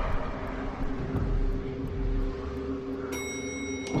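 Street traffic rumble with a steady low hum. A high ringing tone enters about three seconds in and stops abruptly.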